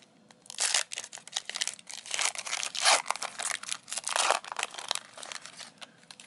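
Foil wrapper of a Panini Score 2020 NFL trading-card pack crinkling as it is torn and peeled open, an irregular run of crackles that stops shortly before the end.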